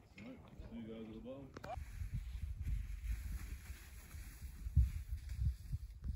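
Wind buffeting the microphone: an uneven low rumble that rises and falls in gusts, setting in about two seconds in and swelling strongest near the end.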